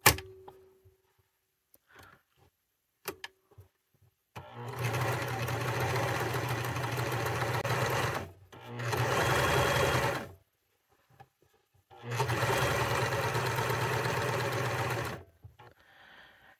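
Janome sewing machine running in three steady bursts of stitching, about four seconds, a second and a half, and three seconds long, with short stops between. A sharp click comes at the very start, and a few light clicks follow before the machine starts.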